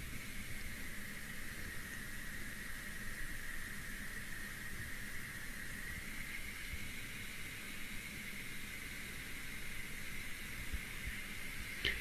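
Steady, faint hiss of background noise from the microphone, with a thin higher band running through it and no distinct events.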